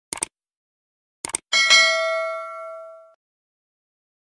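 Subscribe-button sound effect: two quick clicks, two more a little over a second in, then a bright bell ding that rings for about a second and a half as it fades.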